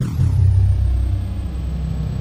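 Logo sound effect: a deep rumble that starts suddenly and holds steady, with a faint high tone that glides down at the start.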